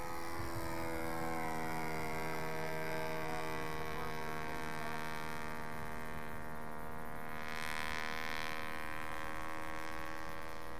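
Radio-controlled model Gypsy Moth's motor droning overhead in flight, a steady pitched hum that holds its note, with a brief swell of higher hiss near the end.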